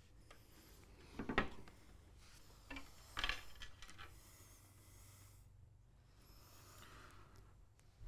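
Faint handling noises over quiet room tone: a short rustle about a second in and a few more around three seconds in, from hands working the controls of an electronic box and handling its wires.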